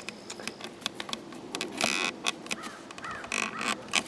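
Irregular clicks and rustles of wires and plastic connectors being pushed by hand down into a cavity at the top of a wooden post, with a few short squeaks about two and three seconds in.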